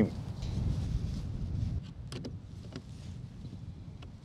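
A low rumble for about two seconds, then two short light clicks as the tool case is handled at the down-tube storage compartment of a carbon mountain-bike frame.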